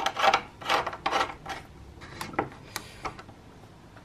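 Metal rosette cover of a lever door handle being screwed on by hand against a wooden door: four short rubbing scrapes in quick succession, then a few light clicks.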